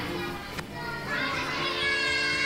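Young children's voices, high and lively, mixed with music. A single sharp click about half a second in.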